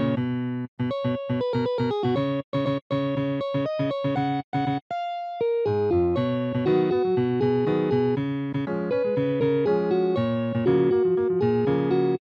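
Computer playback of a guitar tab in a clean, electric-piano-like synthesized tone at 120 BPM. It plays short, choppy chord and note figures, then one briefly held note about five seconds in, then a steadier run of eighth-note chords.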